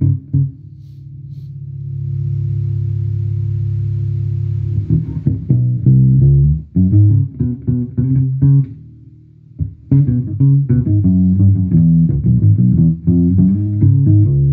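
Electric Precision Bass played through a 1972 Davoli Lied Organ Bass 100 amplifier. A few quick low notes lead into one long held note that swells up and sustains for several seconds, then busy riffing with a short pause about nine seconds in.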